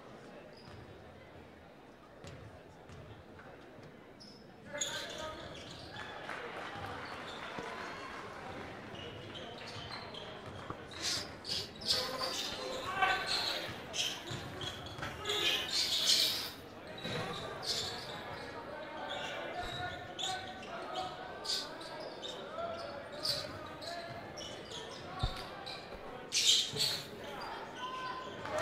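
Basketball game sounds on a hardwood court: a ball bouncing during live play, with voices in the gym. It is quiet for the first few seconds, then picks up about five seconds in, with clusters of sharp hits partway through and near the end.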